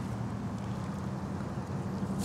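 Steady low background rumble with an even hiss, with no distinct events.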